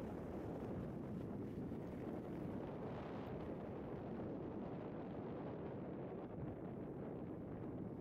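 Steady rushing of wind on the microphone together with skis sliding over packed snow, heard by a skier moving downhill.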